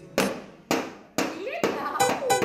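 Toy drum and xylophone struck with wooden mallets, about four hits roughly half a second apart, each fading quickly.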